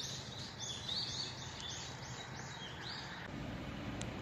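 A small bird chirping in the background: a quick run of short, high chirps, about three a second, that stops a little after three seconds in.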